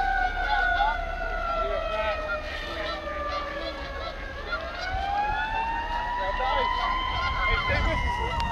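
Emergency vehicle siren in a slow wail: one long tone falls for about four seconds, then rises again and starts to fall near the end.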